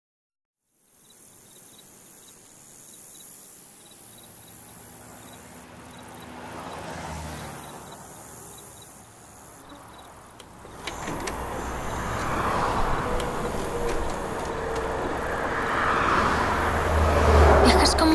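A noisy, vehicle-like rumble with faint voices under it, growing markedly louder from about eleven seconds in.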